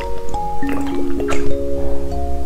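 Wet squishing and slurping as jelly is sucked out of a tube, several short strokes. Background music of held, chime-like notes runs under it.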